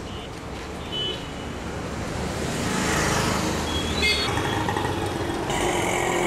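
Traffic on a busy city street: the steady noise of motorbikes, auto-rickshaws and cars passing, swelling about halfway through. Short high horn beeps sound about four seconds in, and a longer horn sounds near the end.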